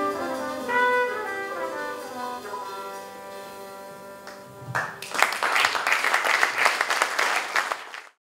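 Live jazz quintet playing the closing phrase of a song, the trumpet lead over piano, double bass and drums, ending on a held chord that dies away. About five seconds in, loud audience applause breaks out.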